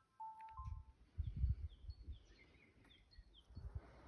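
Small songbirds chirping: a run of short, high, falling chirps in the middle of the stretch, with low rumbles on the microphone underneath. A few brief held tones sound near the start.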